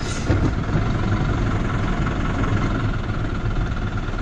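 Steady low engine rumble of a motor vehicle, heard from inside its cab.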